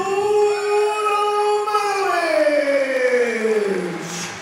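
A man's voice over the arena PA in one long drawn-out call, held steady for about a second and a half and then sliding down in pitch. The call announces the bout's winner.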